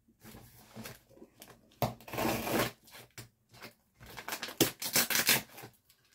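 A cardboard shipping box being opened by hand: packing tape tearing and cardboard scraping and rustling in irregular bursts, busiest near the end.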